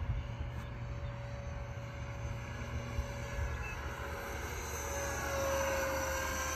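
Electric ducted fan (a 64 mm EDF unit from an E-Flite F-15) of a foam RC F-117 jet whining in flight. It grows louder over the last second or two as the jet passes closer, its pitch falling.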